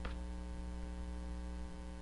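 Steady electrical mains hum with a faint hiss underneath.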